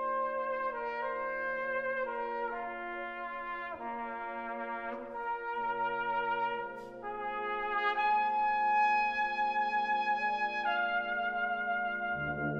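Brass band of cornets, horns, trombones and low brass playing sustained chords under a melody that moves step by step. It grows louder about eight seconds in and the chord shifts again just before the end.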